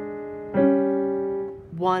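Piano keyboard playing a left-hand two-note chord that rings on and fades, then a second two-note chord struck about half a second in and held for about a second: one step of a 12-bar blues left-hand pattern.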